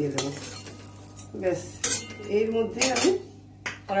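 A flat metal spatula scraping and clinking against a stainless-steel kadai and a steel bowl as the last fried vegetable pieces are scooped out. There are a few sharp metal clinks, one about two seconds in and another near the end, when the spatula is laid down in the pan.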